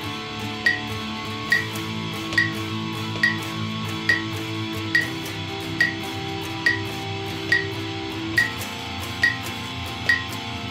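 Electric guitar strumming sustained chords in a sixteenth-note strumming pattern, over a metronome clicking steadily at about 70 beats per minute.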